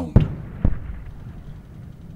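Two sharp bangs about half a second apart, the first the louder, with low noise lingering after them: battle-scene gunfire or explosion effects.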